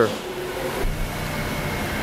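Steady hum inside a Renault Captur's cabin, the engine idling and the ventilation fan running. A dull low thump comes just under a second in, and the low hum is stronger after it.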